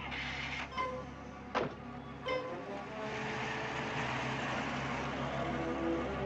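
Three sharp knocks in the first couple of seconds, then a car's engine and tyres running steadily as the car drives off, over background music.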